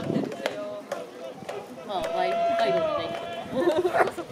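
Baseball spectators talking and calling out, with one long drawn-out shout around the middle. A single sharp crack comes about half a second in, as the pitch reaches home plate.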